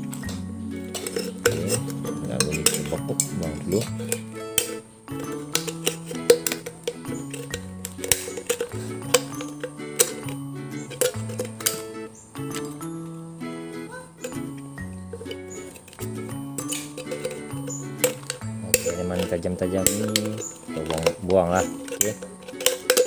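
Background music with a plain melody of held notes, over repeated sharp metallic clicks and snips of scissors cutting through the thin wall of an aluminium soda can.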